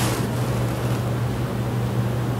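Steady low hum with an even wash of background noise, holding level throughout.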